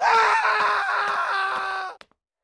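A person screaming in one long, high cry whose pitch sags slightly, cut off abruptly after about two seconds.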